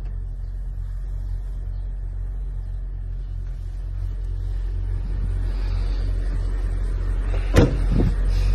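Car engine idling, a steady low rumble heard inside the cabin, getting a little louder about halfway through. A sharp click comes near the end.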